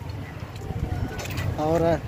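Low, irregular outdoor rumble picked up by a phone microphone, with no clear distinct event, then a man's voice starting near the end.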